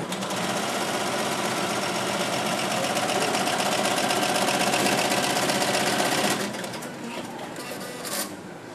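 Industrial computerised embroidery machine stitching at high speed, its needle head making a rapid, even clatter; the sound drops away about six seconds in.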